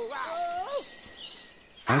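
Small birds chirping rapidly and high-pitched, with a drawn-out pitched call that rises at its end in the first second.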